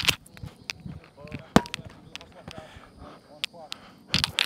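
A single sharp smack about one and a half seconds in, with faint voices around it.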